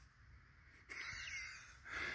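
A person's soft, breathy exhale lasting about a second, starting about a second in, with a faint whistle in it.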